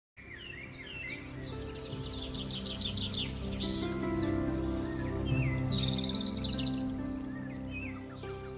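Birds chirping and twittering in quick bursts, busiest in the first few seconds with a rapid trill in the middle, over a soft instrumental intro of held notes that swells slightly.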